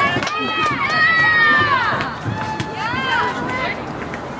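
High-pitched voices shouting across an outdoor soccer field during play: one long, drawn-out call in the first half and a shorter call about three seconds in, over steady outdoor background noise.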